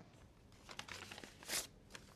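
Paper envelope being torn open and handled: faint rustling, with a short, louder rip about one and a half seconds in.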